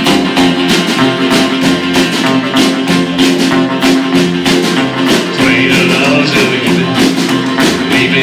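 Live rockabilly band playing an instrumental passage: electric guitar over upright bass, drums and strummed acoustic guitar, with a steady driving beat.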